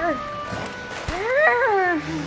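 Wordless cartoon character vocalizations: a short sliding call just as it starts, then a rising, wavering call about a second in, over background music.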